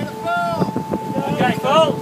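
Wind buffeting the microphone and water rushing past the hull of a large sailing yacht under way, with a steady high hum running through it.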